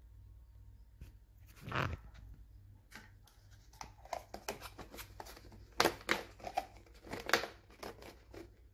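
Thin clear plastic deli tub and its lid being handled and pressed at the rim by hand, giving crinkling and irregular sharp plastic clicks as the lid is worked onto the tub without snapping shut. The loudest clicks come about six and seven seconds in.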